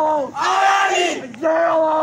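Protesters shouting a slogan together in short chanted phrases, about one a second, each dropping in pitch at its end.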